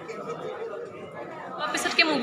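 Background chatter of several people talking at once in a large room. A closer voice starts speaking near the end.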